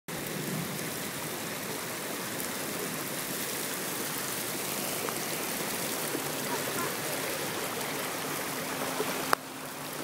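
Heavy rain falling in a steady downpour, an even hiss. A sharp click comes near the end, after which the rain sounds quieter.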